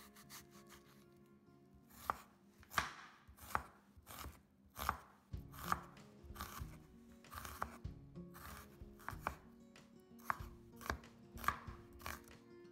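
Cleaver chopping red onion on a wooden cutting board: sharp knocks of the blade striking the board, about one or two a second, starting about two seconds in.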